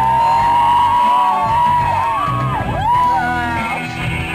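Rock band playing live through a PA in an instrumental passage without vocals, led by electric guitar notes that bend and glide around one pitch range. The bass and drums thin out briefly about a second in.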